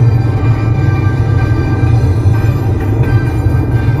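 Music playing loudly from a car's FM radio, heard inside the cabin, just turned up, with a strong steady bass.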